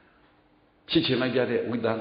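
A man speaking, a Buddhist monk giving a sermon in Burmese. His voice comes back in about a second in, after a short pause.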